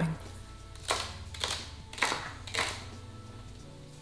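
Chef's knife chopping celery stalks on a wooden cutting board: four sharp chops about half a second apart, over quiet background music.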